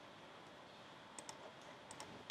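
Near silence with a few faint clicks of a computer keyboard, two close together a little after a second in and one near the end, as code is copied from a web page and switched into a MIPS simulator.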